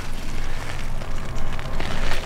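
Wind buffeting the microphone outdoors: a steady rushing noise with a low rumble and no distinct knocks.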